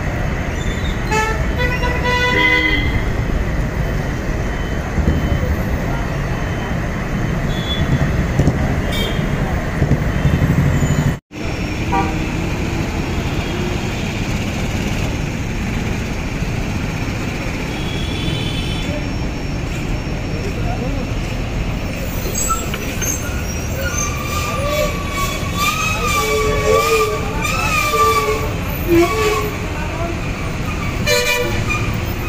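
Street traffic noise with a steady low rumble, a vehicle horn tooting about two seconds in, and people's voices near the end. The sound drops out for an instant a little past the ten-second mark.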